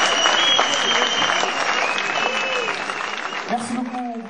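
Audience applause after a live rock song, with a high, held whistle from the crowd. The applause thins out toward the end, as a voice comes in.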